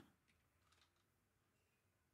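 Near silence with a few faint computer-keyboard keystrokes.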